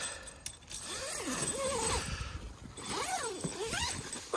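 Zipper on a hot tent's fabric door being drawn open, a rasping run whose pitch rises and falls as the pull speeds up and slows, about a second in and again near the end.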